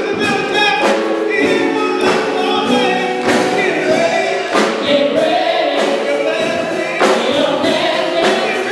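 Gospel praise team of several singers on microphones, singing together, with a sharp percussive hit about once a second.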